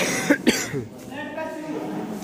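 Three short, sharp vocal bursts in the first half second, then a voice calling out.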